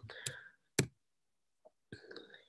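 A single sharp computer click a little under a second in, as the presentation advances to the next slide, with a fainter tick near the end.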